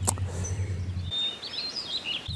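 A bird chirping and warbling in short high notes in the second half, over a steady low hum that cuts off about halfway through. There is a single click just after the start.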